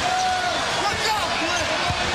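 Basketball arena crowd noise during live play, with voices standing out from the crowd, and a basketball being dribbled on the hardwood court, a thump near the end.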